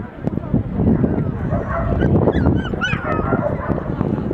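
A dog giving a few short, high-pitched yips about two to three seconds in, over steady crowd chatter.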